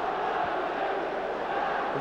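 Football stadium crowd noise: a steady din of many voices from the terraces.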